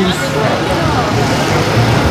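A steady low engine hum, like an idling motor vehicle, with faint voices in the background.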